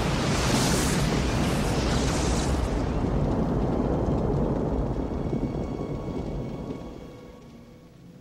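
A deep, noisy rumble with a hissing top. It is loud at first, the hiss dies away after about two and a half seconds, and the rumble fades steadily over the last few seconds.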